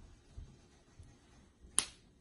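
Faint room tone with a single sharp click near the end.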